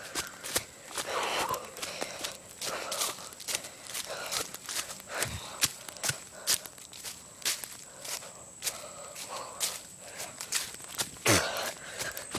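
Footsteps crunching irregularly through leaf litter and twigs on a forest floor.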